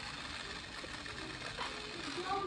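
Small battery-powered motor of a Mickey Roadster Racer toy car running with a steady whir after its button is pushed.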